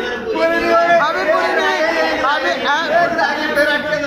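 Men's voices talking over one another, with one pitched voice standing out in the middle of the stretch.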